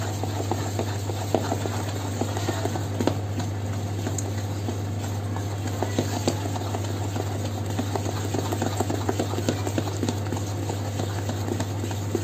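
Thick ground moong and urad dal batter being beaten by hand in a steel bowl: a continuous run of quick, irregular wet slaps and knocks as the hand churns the batter, with bangles on the wrist clinking. A steady low hum runs underneath.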